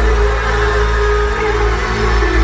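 Loud live pop band music from a stadium sound system, with heavy bass and long held notes and little or no singing, recorded from the crowd on a phone.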